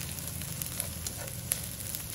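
Sliced onion, garlic and chilli sizzling in oil in a non-stick wok as a plastic spatula stirs them, with small scraping ticks and one sharp tap about one and a half seconds in.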